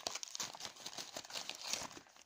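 Sheet of newspaper wrapping crumpled and crinkled by hand, a run of quick irregular crackles.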